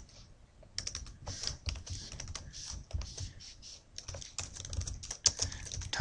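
Computer keyboard typing: irregular runs of keystrokes, starting just under a second in.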